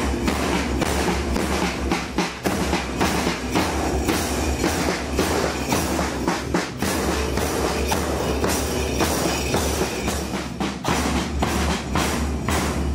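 Marching drum band of snare drums and bass drums beating a steady march rhythm.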